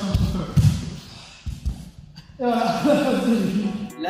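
Men's voices and exertion noises echoing in a large hall, with a couple of dull thuds of bodies landing on the floor mats in the first second.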